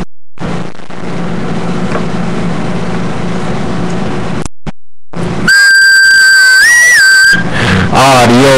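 A steady hiss with a faint hum that cuts off into a short dead silence. Then a loud, wavering, whistle-like high tone sounds for about two seconds, steps briefly higher near its end, and stops abruptly.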